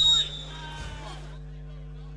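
The end of a commentator's word, then a steady low electrical hum with faint open-air background noise.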